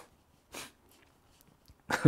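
A man's short, breathy snort-like exhale, a stifled laugh, about half a second in, then his laugh breaking out near the end.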